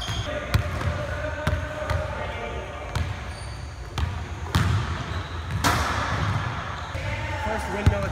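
Basketballs bouncing on a hardwood gym floor: a handful of irregular thuds that ring out in the hall. Voices murmur in the background.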